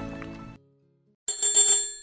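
Theme music fades out into a short silence, then a bicycle bell rings a little past halfway and dies away.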